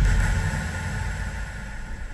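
Low rumbling drone of a horror-trailer sound design, fading steadily away.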